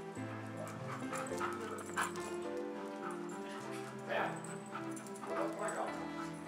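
Background music of sustained, changing chords, with Airedale terriers playing over it and making a few short dog sounds, about two seconds in, about four seconds in and near the end.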